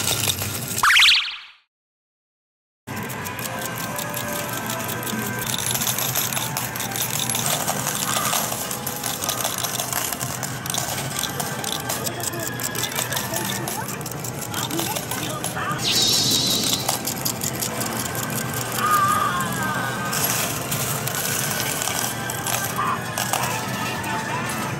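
Coin pusher medal game and arcade din: machine music and electronic game sounds running steadily. About a second in, a rising whoosh ends in a sudden cut to total silence lasting just over a second, then the din resumes.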